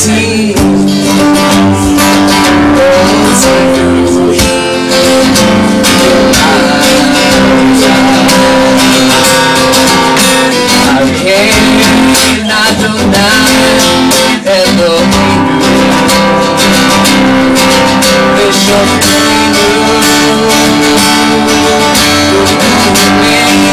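Acoustic guitar strummed steadily, with a man singing along at the microphone.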